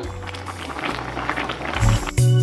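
Raw shrimp tipped from a plate into a pot of simmering moqueca broth, with wet splashing and crackly bubbling, over background music with a steady bass line that swells loudly near the end.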